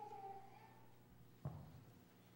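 Near quiet: a faint, brief high-pitched squeak in the first second, then a single sharp knock about one and a half seconds in.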